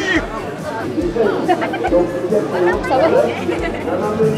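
Chatter of several people's voices, with background music playing underneath.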